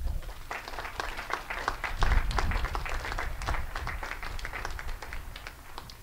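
An audience applauding: many hands clapping in a dense patter that thins out near the end.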